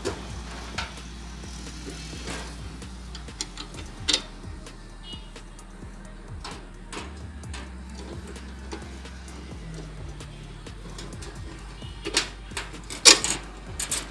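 Scattered metal clicks and clinks as a bolt is handled and fitted through the holes of a perforated steel adjustment strap on a power tiller ridger attachment, with a few sharper knocks near the end.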